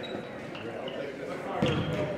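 Indistinct chatter of players and spectators echoing in a school gym, with a basketball bouncing once on the hardwood floor about a second and a half in.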